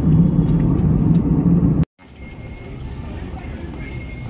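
Steady low drone of an airliner cabin in flight, the noise of jet engines and airflow, which cuts off abruptly just before halfway. It is followed by a much quieter airport-terminal background hum with a faint thin whine.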